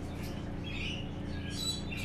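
A steady low hum with a few faint, short, high-pitched animal chirps over it, one about two-thirds of a second in and another near the end.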